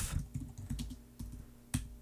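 Typing on a computer keyboard: a quick run of light key clicks in the first second, then a single sharper keystroke near the end.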